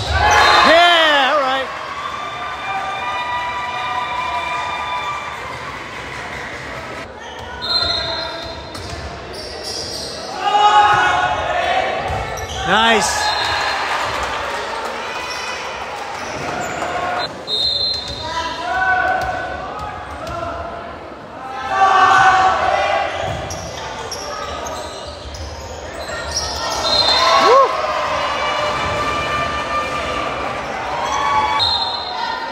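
Volleyball rallies in a large, echoing gym: the ball is struck and thuds, and players and spectators break into several bursts of shouting and cheering as points are won.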